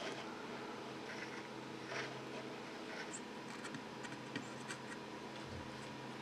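Faint scratching and light ticks of bare, annealed copper wire being wound by hand around the body of a two-watt resistor, over a low steady hum.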